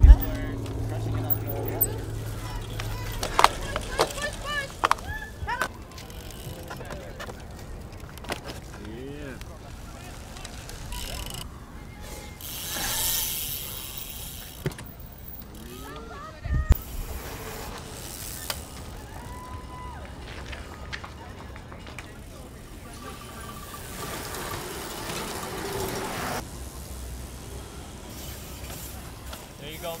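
Cyclocross race ambience: scattered spectators' voices and calls, with bikes riding past on the grass course and a few sharp knocks.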